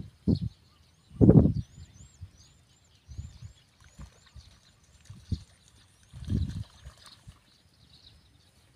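A bird gives a quick series of faint, high, arching chirps through the first half. A few loud, low, dull bursts come about a second in and again near the end, with a couple of short knocks between them.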